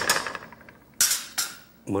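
Metal spoon clanking against an aluminum pot after stirring: one sharp clank about a second in that rings briefly, with smaller scrapes and clicks just before.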